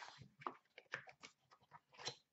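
Faint handling of a small cardboard box as its lid is opened: a few soft scrapes and rustles.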